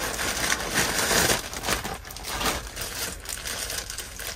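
Plastic packaging bag crinkling and rustling in irregular bursts as it is opened and handled.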